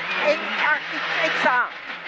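Rally car engine running steadily, heard from inside the cabin, under a man's voice calling pace notes.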